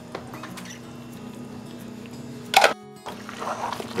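Faint background music over a quiet kitchen, broken by a short loud sound about two and a half seconds in and a brief dropout. Near the end a wire whisk starts stirring the batter in the bowl.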